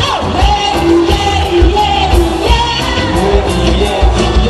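Live pop band performing: singers over drums, bass and electric guitars, with a steady beat.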